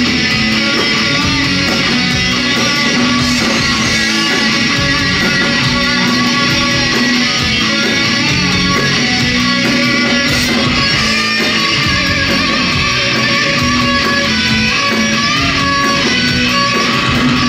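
A rock band playing live: electric guitars, including a Telecaster-style guitar, over bass guitar and drums, loud and at an even level, as heard from among the audience.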